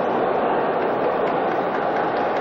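Steady murmur of a large crowd filling an indoor hall, an even noise with no clear ball strikes.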